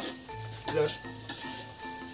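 Food sizzling in a wok on a wood-fired stove as it is stirred with a ladle, under background music with held notes and a low bass line.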